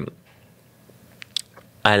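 A short pause between words at a close podcast microphone: faint room tone with two small mouth clicks, tongue or lip smacks, about a second and a quarter in, before a woman's voice picks up again near the end.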